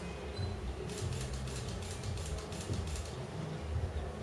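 Low electronic drone with a run of rapid crackling clicks from about one second to three seconds in, from a live experimental sound performance.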